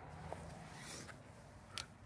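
Faint handling noise from a phone being moved about in the hand, with a small click a moment in and a brief scrape near the end.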